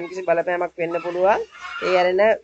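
A man speaking: continuous narration in Sinhala, with his voice rising in pitch about a second in.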